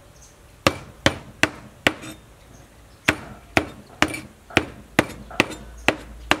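A meat cleaver chopping cooked meat on a wooden cutting board: about a dozen sharp strikes, two to three a second, with a pause of about a second early in the run.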